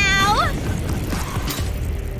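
A high-pitched, sped-up cartoon voice cries out, its pitch rising sharply as it ends, then a pop-up toaster releases with a single sharp click about one and a half seconds in as the toast springs up.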